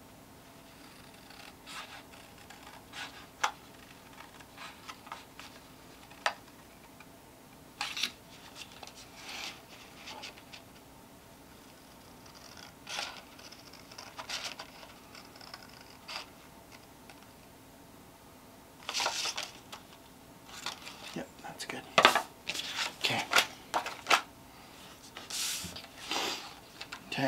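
Scissors snipping through printed paper in short, scattered single cuts around a curving leaf-shaped edge. Near the end the snips come thicker along with paper rustling as the cut-out piece is handled.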